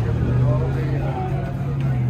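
Indistinct background voices over a steady low hum.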